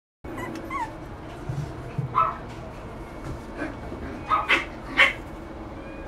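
Maltese puppy giving a series of short, high yips and barks, one falling in pitch near the start and the loudest about five seconds in.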